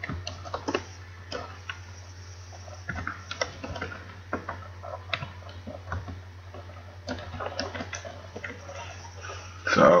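Computer keyboard being typed on in irregular bursts of keystrokes, over a steady low electrical hum.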